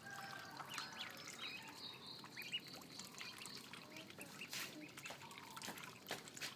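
A brood of domestic ducklings peeping: many high, thin calls scattered and overlapping.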